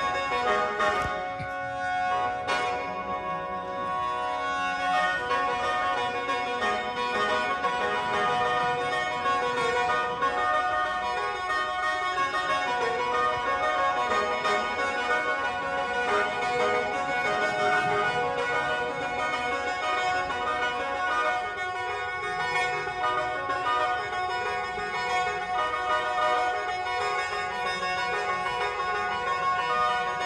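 Lao khaen, a bamboo free-reed mouth organ, playing a traditional Lao tune, several reed notes sounding together over a held drone.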